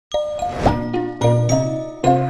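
Short intro jingle: a series of pitched musical notes that start one after another, with a quick upward slide about two-thirds of a second in.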